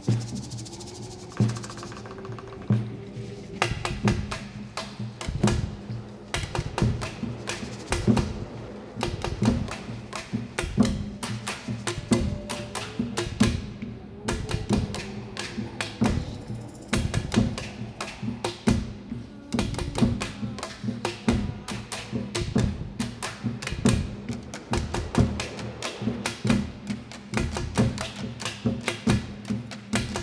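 Percussion ensemble beating plastic drums and containers with mallets in a fast, dense rhythm of hollow knocks over sustained low tones. The beating thickens about three and a half seconds in.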